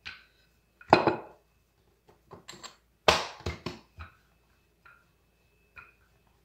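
Wooden rolling pin beating down on a thick folded sheet of pastry dough on a countertop: a run of irregular knocks. The loudest is about a second in, with a quick cluster around three seconds in, then lighter taps towards the end.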